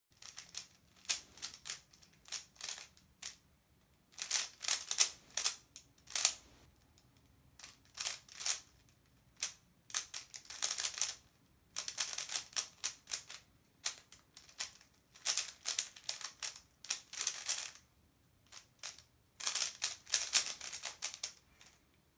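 Plastic puzzle cube being turned quickly by hand: runs of rapid clicks and clacks in bursts of a second or two, with short pauses between.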